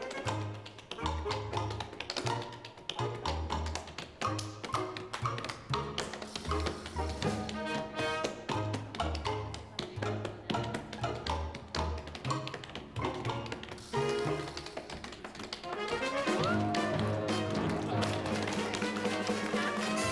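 Tap shoes on a stage floor beating out fast tap-dance rhythms over show music with bass notes. About four seconds before the end the music grows louder and fuller.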